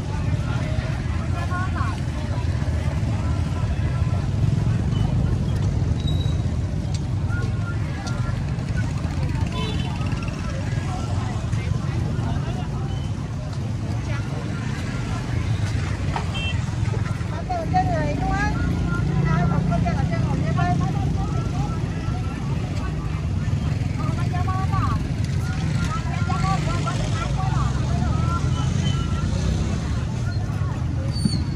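Busy roadside street ambience: a steady low rumble of motorbike traffic with people talking nearby, the chatter picking up a little past the middle and again near the end.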